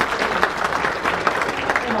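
An audience applauding: many hands clapping densely and steadily.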